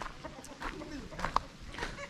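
A chicken clucking quietly, a few short clucks.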